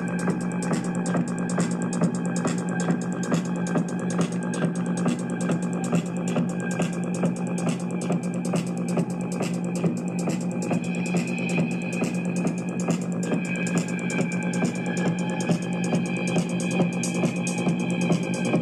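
Electronic music played live on a hybrid hardware-and-software synth rig: a held low synth note and higher sustained tones over a fast, even drum pattern.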